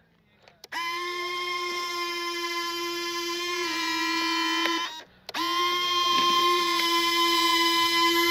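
Electric retractable landing gear of a Freewing JAS-39 Gripen 80 mm EDF jet being cycled. The retract motors give a steady whine for about four seconds, stop briefly about five seconds in, then whine again for another stroke of the gear.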